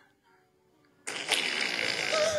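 About a second in, a toddler's long, noisy fart starts, played back from a phone video held up to the microphone.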